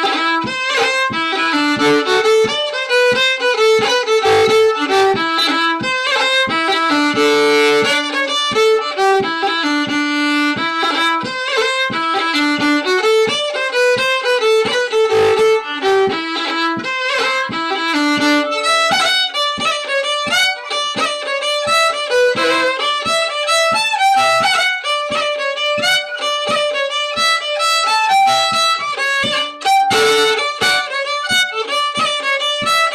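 A fiddle tune played on violin at a lively pace, heard over a video call. About nineteen seconds in, the melody moves up into a higher register.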